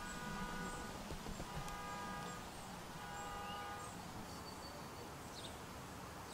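Quiet outdoor ambience with faint bird chirps, and three times a held, pitched call of about a second each in the first four seconds.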